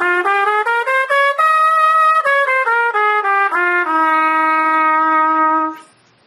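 Trumpet playing an F Mixolydian scale (F to F, with B-flat and E-flat): one octave up in short even steps, a held top note, then back down. It ends on a long held low F that stops shortly before the end.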